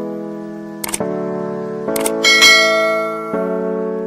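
Background music of sustained keyboard chords, with short clicks about one and two seconds in and then a bright bell chime that rings briefly: the click and notification-bell sound effects of a subscribe-button animation.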